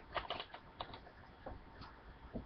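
Faint, irregular light clicks and taps of small makeup items being handled, about half a dozen in two seconds.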